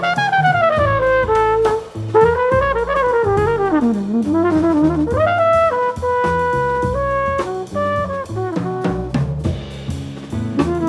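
Jazz trumpet soloing over upright bass, electric guitar and drum kit. It opens with a falling run, plays a winding phrase that dips into its low register, then moves to steadier held notes, with the drums keeping time throughout.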